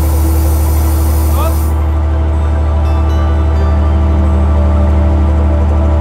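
Steady, loud low drone of a ship's machinery running while an underwater robot is craned over the side, with background music; a high hiss drops away about two seconds in.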